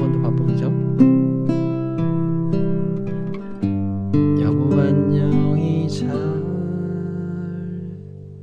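Antonio Lorca 1015 nylon-string classical guitar being fingerpicked through the closing phrase of a song, with single notes and chords plucked about every half second. A last chord is left ringing and fades out over the final few seconds.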